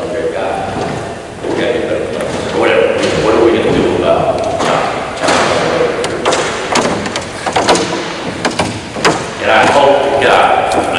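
A man lecturing in a large gym hall, his voice echoing off the hard walls and floor, with a few sharp thumps in the second half.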